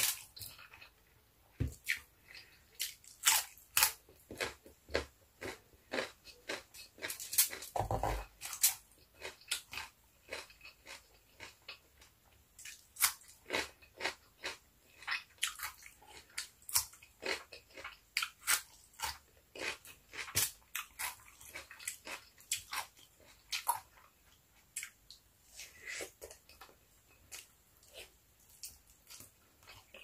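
Close-miked eating: crisp crunching bites and chewing, including raw cucumber, with many short wet mouth clicks and snaps. One duller, heavier thump about eight seconds in.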